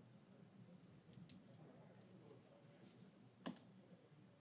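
Near silence: faint room tone of a large hall, with a few light clicks about a second in and a sharper one near the end.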